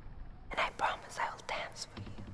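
A person whispering a few short words, breathy and without pitch.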